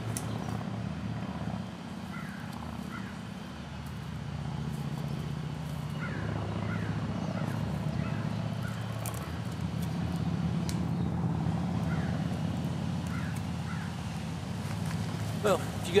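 A steady low engine hum, swelling a little through the middle, with a few faint short chirps above it.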